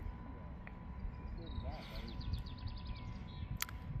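Faint outdoor background: a low rumble with faint distant voices and a thin steady high tone.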